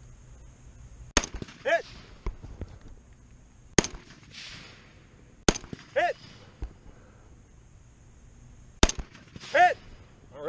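Four rifle shots from a DSA SA58 FAL firing 7.62×51 mm rounds, spaced a few seconds apart as the shooter works through a set target order. A short spoken call follows three of the shots.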